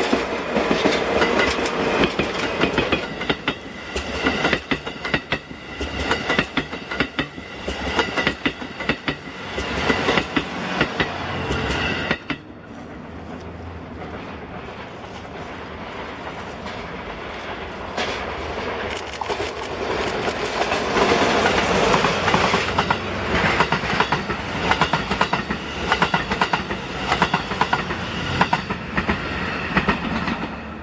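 A DE10 diesel locomotive hauling 35-series passenger coaches passes at speed, its wheels clicking rapidly over the rail joints. It cuts off about twelve seconds in. A train then approaches, growing louder, and passes with more rapid wheel clicks.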